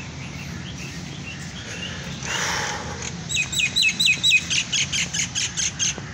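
Common myna calling: a loud, quick run of repeated sharp hooked notes, about six a second, starting about three seconds in. Fainter chirps from other birds come before it.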